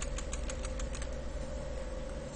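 Rapid, evenly spaced small clicks, about eight a second, from a computer mouse scroll wheel turned to zoom into the chart. They stop a little past a second in, over a steady hum.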